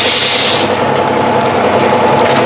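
Automatic pouch packing machine running: steady mechanical clatter with rapid fine ticking and a hum, and a brief hiss near the start.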